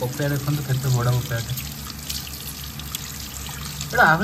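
Water running from a kitchen tap onto a papaya and splashing into the sink as hands rub the fruit clean, with a voice over roughly the first second.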